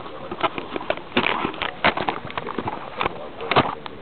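Handling noise on the Syma X1 quadcopter's small onboard camera microphone: an irregular string of sharp knocks and rubs as the quadcopter is held and moved by hand, the loudest knock near the end.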